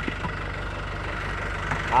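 An engine idling steadily, a low even rumble with a fast regular pulse.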